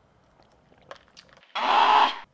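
A quiet sip of iced coffee through a straw, with only a few faint ticks, then a loud breathy exhale about one and a half seconds in.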